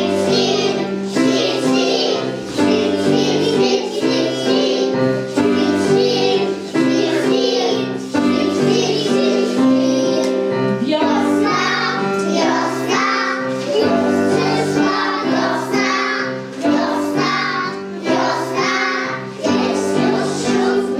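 A group of young children singing a song together in unison, over an instrumental backing of steady held notes.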